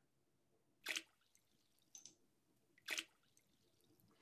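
A drop splashing into water, played back as a recorded sound sample: two short, sharp splashes about two seconds apart, with a much fainter tick between them.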